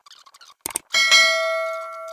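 Notification-bell sound effect from a subscribe-button animation: two quick clicks, then a bright bell ding about a second in that rings on and fades away.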